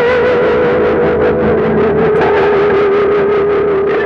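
Instrumental ending of a rock song: a distorted electric guitar holds one long note with vibrato over a steady beat.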